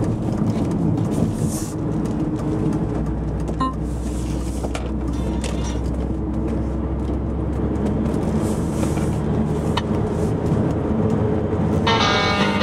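Car engine and tyre noise heard from inside the cabin while driving, a steady low drone with a few faint clicks.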